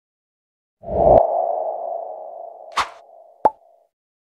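Logo-intro sound effect: a low thump with a ringing tone that slowly fades over about three seconds, a brief swish near the three-second mark, and a sharp pop just before the end.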